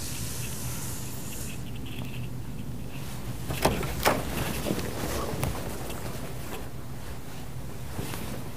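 Steady low room hum, with a handful of light knocks and scuffs around the middle as footsteps cross the room and the exam-room door opens.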